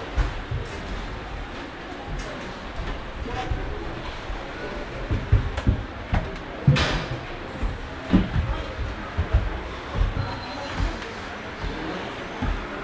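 Indistinct voices murmuring in a large indoor hall. From about five seconds in come irregular low thumps from the handheld camera being carried up a staircase, with one sharper knock midway.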